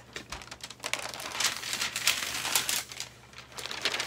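Packaging being rustled and crinkled by hands unpacking a box: a run of irregular crackles and clicks, busiest through the middle.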